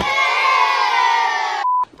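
An edited-in comedic sound effect: a loud, many-pitched sound that slides slowly down for about a second and a half and stops abruptly, followed by a short high beep.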